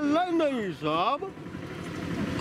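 A man's drawn-out vocal call, swooping down in pitch and back up, breaking off a little after a second in. It is a blanket hawker's cry.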